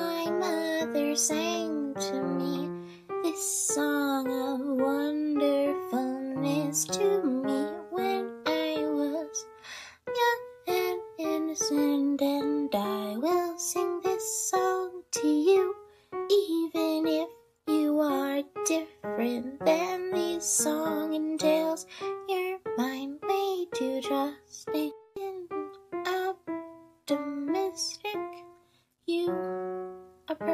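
A lullaby sung by one voice with instrumental accompaniment.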